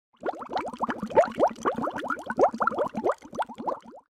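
Water bubbling: a dense, quick run of short rising plops that cuts off suddenly at the end.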